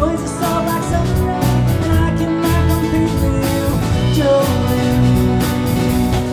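Live country band playing, with acoustic guitar, bass, pedal steel guitar and drums keeping a steady cymbal beat. A woman's singing voice is in the mix.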